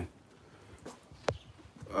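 A quiet pause holding two short, sharp clicks, the louder about a second and a quarter in.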